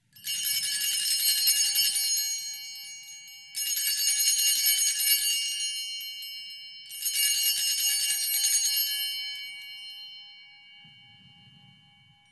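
Altar bells (a cluster of small sanctus bells) shaken in three jingling peals about three and a half seconds apart, each ringing on and fading, the last dying away near the end. They are rung at the elevation of the chalice after the consecration.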